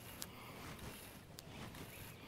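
A baitcasting reel and its line being handled to pick out a backlash ('bird's nest'), with two faint sharp clicks, one just after the start and one about a second and a half in, over quiet open-air background.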